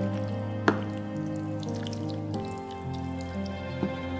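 Background music of held notes over the wet sound of a wooden spoon stirring sauced pasta in a glass baking dish. A sharp knock comes less than a second in, and a smaller one near the end.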